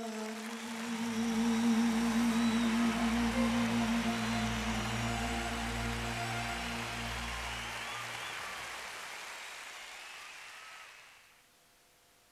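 A live band's final chord is held and dies away while audience applause, with a few whistles, swells up. Everything fades out shortly before the end.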